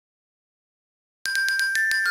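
Silence, then a little over a second in, a quick run of bright, glockenspiel-like chiming notes starts suddenly: a game sound effect played as the song-picker wheel spins.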